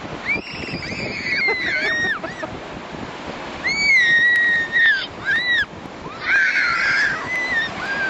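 Children shrieking in several high-pitched squeals as the surf washes around their feet, over the steady rush of breaking waves.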